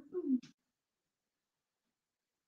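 The tail of a drawn-out, falling wail-like voice, cut off by a short click about half a second in, followed by dead silence.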